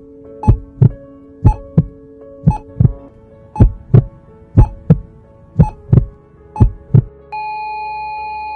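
Heartbeat sound effect: slow double thumps about once a second over a steady music drone. Near the end the beats stop and a single high held note comes in.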